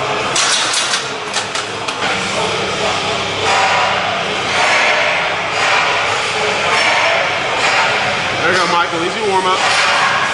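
Busy gym ambience: indistinct voices over a steady background din. There are a few sharp clicks or clanks in the first second or two.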